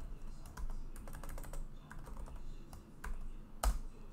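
Computer keyboard typing: a run of light key clicks, with one louder keystroke near the end.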